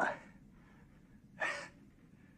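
An elderly man's halting speech: two short words about a second and a half apart, with faint room tone between them.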